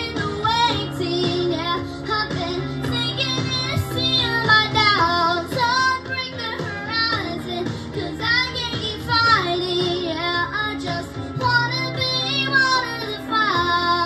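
A girl singing a slow song into a handheld microphone over instrumental accompaniment, her voice carried through a PA system.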